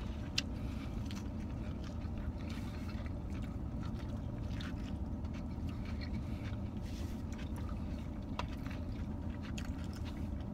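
Steady low hum inside a car cabin, with faint chewing and a few small clicks scattered through it.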